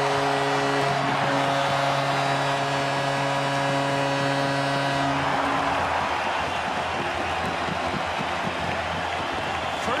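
Arena goal horn sounding a steady low chord over a loud cheering crowd, marking a home-team goal. The horn cuts off about five and a half seconds in and the crowd keeps cheering.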